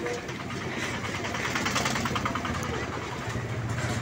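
Street noise with an engine running nearby and voices in the background; a rapid pulsing rattle swells to its loudest about halfway through, and a steady low hum grows stronger near the end.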